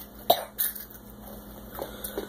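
A child coughing from the heat of Xxtra Hot Cheetos: one sharp cough about a third of a second in, followed by a smaller one and softer throat sounds.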